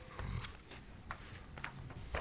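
A few faint knocks and clicks of handling at a meeting table, picked up by the desk microphones, with a low thump shortly after the start.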